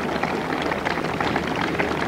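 Steady applause from a crowd of golf spectators, many hands clapping at once.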